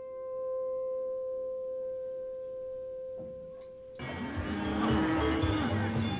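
A single held piano note dies away slowly for about four seconds. Then, abruptly, a livestock fair's sound cuts in: cattle mooing over a busy background.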